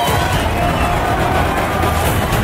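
A dense, noisy swell with a deep low rumble, part of a produced music intro's sound effects, with no clear tune or voice standing out.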